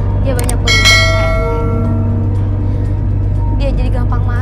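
A couple of quick clicks, then a bright bell chime about a second in that rings and fades away. It is the notification-bell sound of a subscribe-button animation, played over a low, steady drone of background music.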